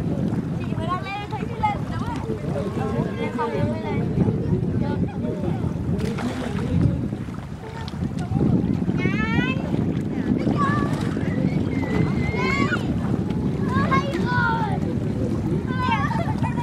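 Wind noise on the microphone, a steady low rush, with high-pitched voices calling out now and then over it.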